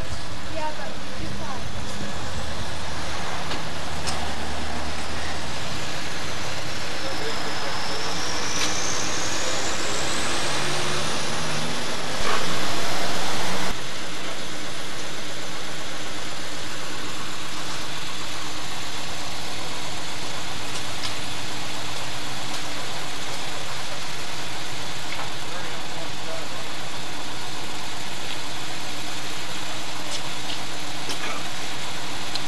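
Steady, even background noise with indistinct voices, and a brief louder burst about twelve seconds in.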